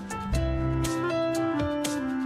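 Background music: a guitar-led instrumental with sustained chords that change every half second or so and regular percussive hits.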